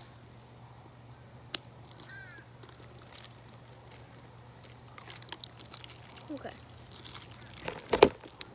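A sharp click as the cap of a plastic water bottle is pulled open, followed a moment later by one faint crow caw, then a few small faint clicks while the bottle is drunk from.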